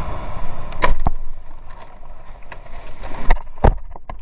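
Quad bike (ATV) running along a dirt track with wind on the helmet-camera microphone, then sharp knocks and thumps about a second in and again past three seconds as the rider crashes and is thrown off.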